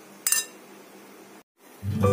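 A single short clink of a steel spoon against the mixing bowl, over faint room noise. Near the end the sound drops out for an instant and background music begins.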